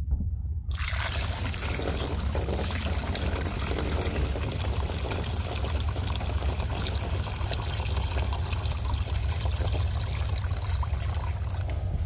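Water pouring in a steady stream into a red plastic screened funnel set in the bung of a blue 55-gallon plastic drum, splashing and bubbling as the funnel fills. It starts about a second in and stops just before the end.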